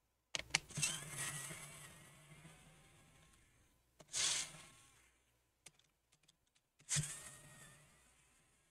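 Electric precision screwdriver running in three short bursts as it backs out a laptop battery screw, each run with a low motor hum and a faint whine. A few light clicks of handling come between the runs.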